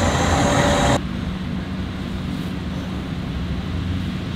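Military Humvee's V8 diesel engine running with a steady low hum, heard from inside the cab. A broad rushing noise over it stops abruptly about a second in, leaving the engine hum alone.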